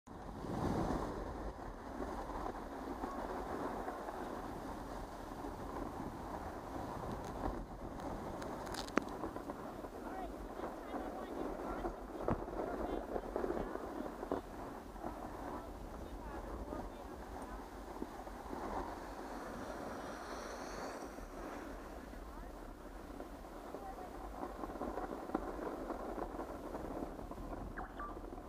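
Steady rushing noise of skiing downhill: skis sliding over groomed, packed snow, mixed with wind on the microphone.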